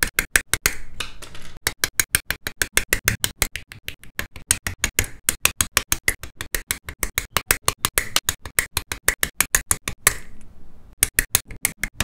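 Hobby nippers snipping plastic model-kit parts from their sprues, the sharp clicks cut into an even, rapid rhythm of about six a second. Two brief stretches of softer plastic rustling break in, about a second in and near the end.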